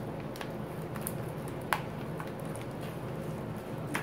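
A few short crinkles and clicks of a gold foil pouch being handled and its sticky seal peeled open, the sharpest a little under halfway through, over a steady low room hum.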